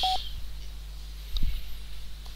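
Computer keyboard being typed on: a few faint key clicks and a louder low thump about one and a half seconds in, over a steady low electrical hum. A brief beep-like tone sounds right at the start.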